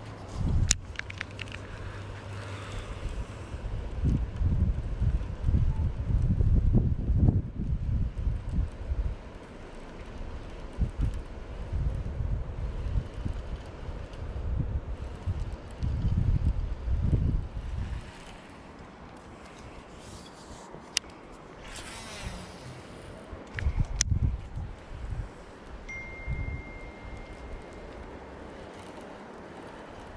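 Wind buffeting an outdoor microphone in gusts, strongest in the first third and again briefly later, with a few sharp clicks about three-quarters of the way through.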